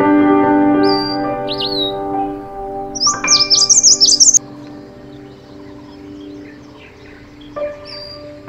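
Soft background music with sustained notes, overlaid with birds chirping: a few short chirps about a second in, then a loud rapid run of high twittering from about three seconds in that stops suddenly near the middle.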